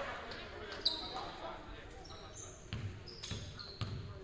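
A basketball being dribbled on a hardwood gym floor, thudding about every half second in the second half. Short high sneaker squeaks come about a second in and again late on, over background voices in a large hall.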